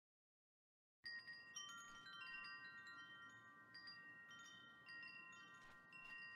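Quiet wind chimes tinkling, many struck ringing tones at different pitches overlapping one another, starting suddenly about a second in after dead silence.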